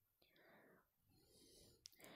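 Near silence, with only a very faint murmur and a tiny click near the end.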